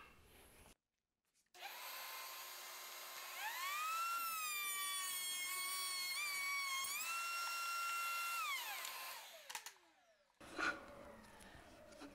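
Table-mounted router with a quarter-inch slot-cutting bit running with a high whine. Its pitch dips and climbs as the board is fed into the bit to cut a groove along its edge, then the motor is switched off and the whine falls away near the end.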